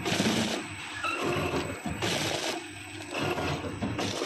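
Powder sachet packing machine running, its mechanical cycle repeating about once every two seconds.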